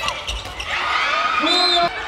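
A handball bouncing on an indoor hardwood court during play, with a single drawn-out shouted call about a second long that rises and falls in pitch and stops abruptly near the end.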